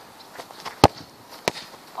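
A football being volleyed: one sharp kick on the ball a little under a second in, then a second, softer thud about half a second later.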